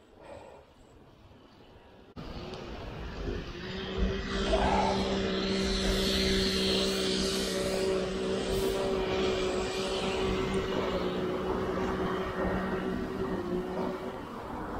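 A steady engine drone at one unchanging pitch sets in about three seconds in and holds until just before the end, over a rushing noise.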